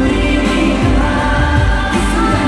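K-pop boy group song played loud over an arena sound system: male vocals over a pop backing track with a deep drum beat.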